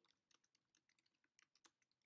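Faint typing on a computer keyboard: scattered light key clicks, a dozen or so over two seconds.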